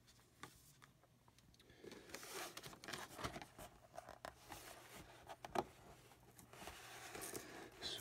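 Faint scraping and crinkling of fingers working open the sealed flap of a cardboard trading-card box, starting about two seconds in, with a few sharp clicks.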